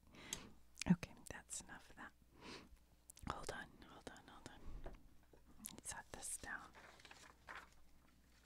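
Soft whispering mixed with rustling and light knocks from handling a card binder with plastic sleeves, the loudest a single knock about a second in.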